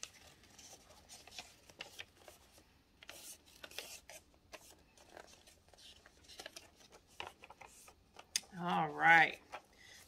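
Soft rustling and small crisp crinkles of a sheet of thin paper being folded and creased by hand, faint throughout, with a brief spoken word near the end.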